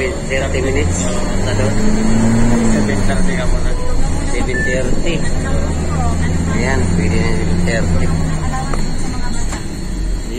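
Public light bus engine heard from inside the cabin, its drone rising in pitch and falling back twice as it accelerates and eases off, with people talking in the background.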